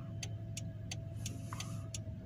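Car engine running, heard from inside the cabin as a steady low hum with a thin steady whine above it, and light ticks about three times a second.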